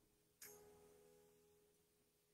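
Near silence: a faint steady tone with one faint click about half a second in.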